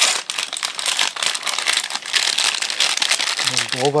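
Bread wrapper crinkling as the bread is handled, a dense, continuous run of fine crackles, with a short hum of voice near the end.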